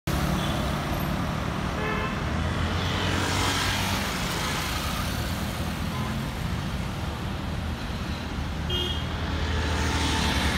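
Road traffic: motorcycles and cars passing with a steady engine rumble and tyre noise, one vehicle swelling past about three seconds in. Short vehicle horn toots sound about two seconds in and again just before the end.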